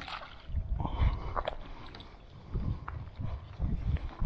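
Water splashing and sloshing as a hooked trout is scooped from the lake into a landing net, with dull low thumps.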